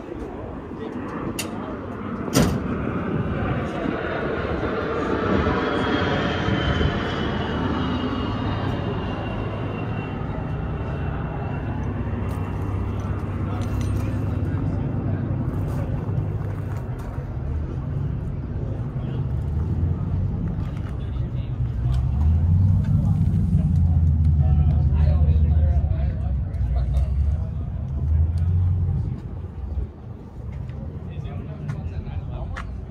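Outdoor car-show ambience: vehicle noise and murmur of voices, with a slowly falling whine through the first half and a heavier low rumble later on.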